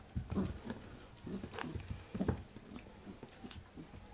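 A Pembroke Welsh Corgi puppy making short, low grunts and play-growls in irregular bursts as it mouths a hand, with a few light clicks between them.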